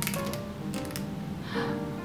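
Background music, with a few quick clicks near the start from a Charlotte Tilbury Retoucher twist-up concealer pen being turned to push product onto its brush.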